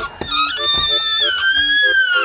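A toddler's long, high-pitched whining cry, held as one wail, over background music.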